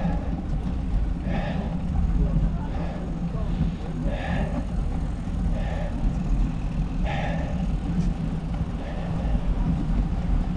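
Wind and road rumble on the microphone of a camera riding along on a bicycle, steady throughout, with a softer sound repeating about every second and a half.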